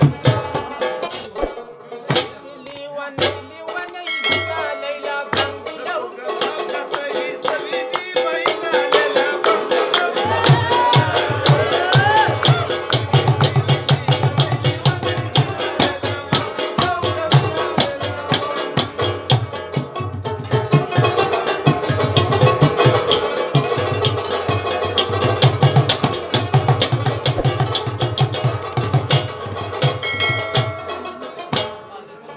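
Pashto rabab-mangay folk music: fast hand drumming on a mangay clay-pot drum under a plucked rabab melody, with a voice singing. Deeper drum strokes join the rhythm about ten seconds in.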